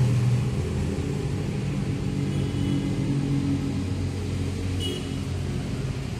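A steady low engine hum from a motor vehicle or machine running, easing off slightly toward the end.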